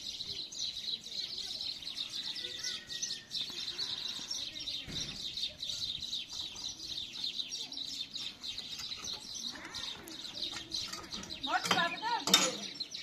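Many small birds chirping continuously in a busy, overlapping chorus.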